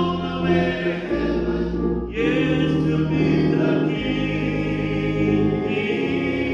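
Men's choir singing a gospel hymn in harmony, with held chords that change every second or two.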